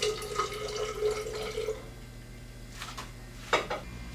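Water poured from a small glass into a tall glass graduated cylinder of whiskey, a steady trickle with a ringing tone for about two seconds. A short glassy knock follows about three and a half seconds in.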